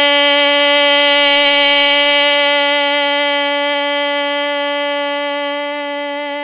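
Music from a song: one long note held at a single unwavering pitch, slowly fading toward the end.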